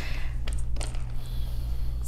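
A steady low hum, with a couple of faint soft ticks about half a second in as a warm sheet of splinting material is handled on a cloth-covered table.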